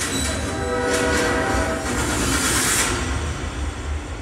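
A train rushing past with its horn sounding, cutting in suddenly over a deep rumble and a loud hiss; the horn fades after about two seconds while the rumble carries on. It comes from a film trailer's soundtrack played over speakers.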